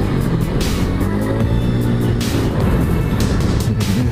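Yamaha NMAX 155 scooter with an RS8 aftermarket exhaust, its single-cylinder engine running steadily while cruising, heard together with background music.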